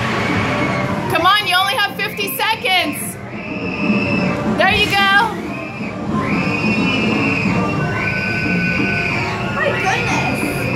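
Electronic game music and sound effects: sustained synth tones that slide at their ends, with fast-warbling electronic sweeps about a second in and again near five seconds.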